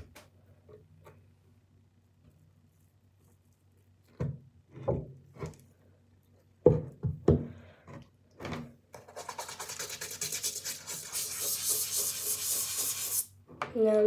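A few light knocks and clicks of things handled on a counter, then about four seconds of brisk scratchy rubbing, a toothbrush scrubbing, which stops a little before the end.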